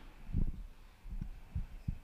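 Four soft, low thumps picked up by the lectern microphone, the first about half a second in and the loudest, the others close together in the second half, over a faint steady room hum.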